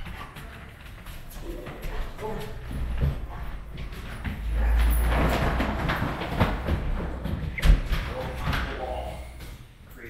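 Scattered thuds and footsteps of a handler and a dog moving over wooden training steps and turf, with a louder stretch of low rumbling and knocking around the middle.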